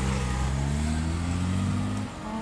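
A car engine accelerating, its pitch climbing steadily.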